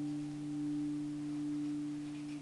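Electric guitar chord left ringing out: two steady low tones sustain while the higher overtones fade away.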